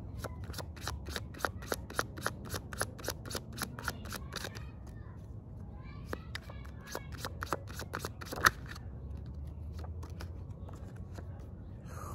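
A tarot deck being shuffled by hand: rapid runs of card flicks in two bursts, the first lasting about four seconds and the second starting about six seconds in and ending with a sharp snap.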